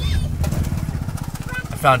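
A vehicle engine running with a fast, even pulse over a low road rumble, heard from inside a moving car. A voice begins right at the end.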